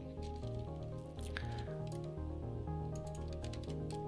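Soft background music of held notes stepping over a bass line, with a few faint keyboard clicks.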